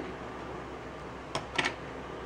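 Steady faint room hiss, with a few short clicks from hands handling the clay and a wooden modelling tool about one and a half seconds in.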